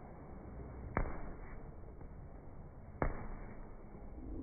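Boxing-glove punches landing on a leather heavy bag: two sharp hits about two seconds apart, each followed by a short echo.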